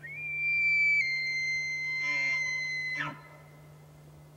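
A single high whistle-like tone held for about three seconds. It dips slightly in pitch about a second in and slides down as it stops. A low steady hum runs underneath.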